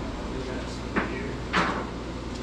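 Two sharp knocks about half a second apart, the second louder with a short ringing tail, over a steady low machine hum.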